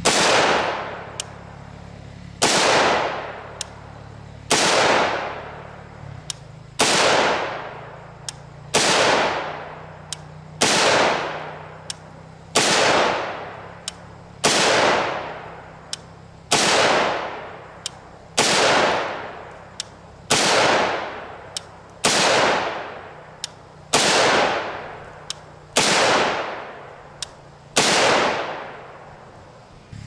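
14.5-inch-barrel AR-15 firing 5.56 NATO (PPU M193 55-grain FMJ) in slow single shots, about fifteen in all, spaced about two seconds apart. Each sharp report is followed by an echo that fades over about a second.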